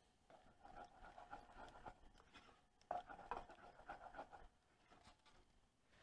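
Faint scraping and squelching of a wooden spoon stirring thick mashed rutabaga in a pot, in two spells of a second or two each.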